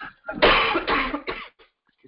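A person coughing, a short run of coughs starting about half a second in and lasting about a second.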